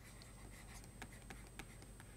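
Faint, irregular taps and scratches of a stylus writing by hand on a tablet.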